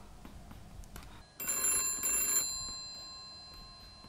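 Telephone bell ringing once, starting about a second and a half in and lasting about a second, its bell tone then fading out slowly.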